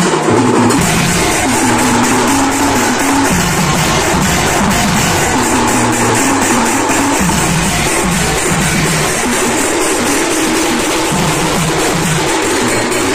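Loud procession music: a fast, steady drum beat with hand cymbals and a melody line above it, playing without a break.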